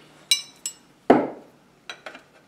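Metal hand tools clinking as a 19 mm wrench is picked up: two light, ringing clinks, then a louder knock about a second in and a small click near the end.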